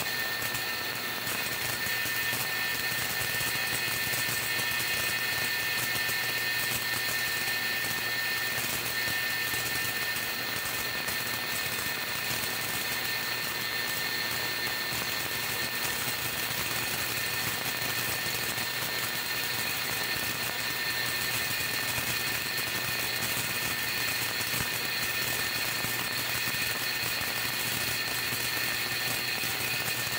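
Steady electrical hum with a thin high whine and hiss from a running homemade Tesla coil and ultrasonic-transducer test rig.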